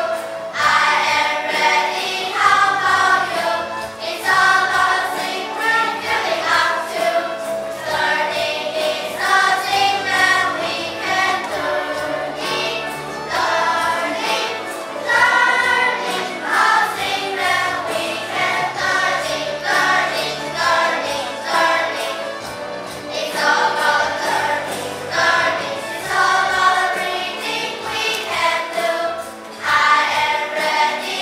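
A children's class choir singing a song in English together, with instrumental accompaniment carrying steady low notes underneath.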